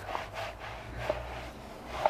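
Microfibre towel rubbing over a rubber car floor mat in soft wiping strokes, faint, over a low steady hum.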